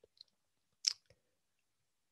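Small wet mouth clicks from lips and tongue in a pause between words, with one short, sharp hiss of breath just before a second in.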